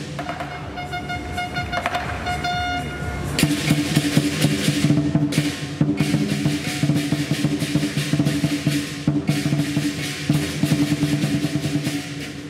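Lion dance percussion: a large Chinese drum beaten with crashing cymbals and ringing gongs in a fast, driving rhythm. For the first three seconds the beating is quieter under a held pitched tone, then the full ensemble comes back in loudly.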